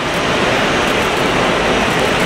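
Steady, even background din outside an airport terminal, mostly traffic noise.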